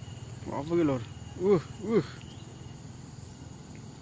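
Steady insect chirring with a faint, even high tone, continuing throughout. A man's voice says a few short words in the first half.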